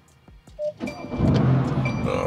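Near silence, then about a second in the Mercedes-AMG GT's engine starts at the push of its start button, with a low rumble that comes up and holds, alongside music.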